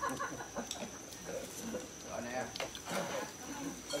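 Background chatter of several people talking over one another at a dinner table, with a few sharp clicks of dishes or utensils. A faint steady high-pitched whine sits underneath.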